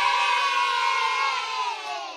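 A group of children cheering, one long held "yay" from many voices together, starting to fade near the end.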